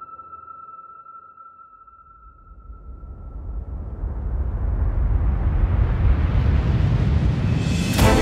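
Film-score sound design under a title card: a steady high ringing tone that fades out about four seconds in, while a noise swell grows steadily louder and brighter toward the end.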